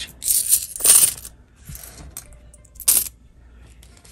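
Loose coins jingling and clinking as they are dropped into a pocket of a fabric wallet, in two quick bursts in the first second or so, then one short sharp clink near three seconds in.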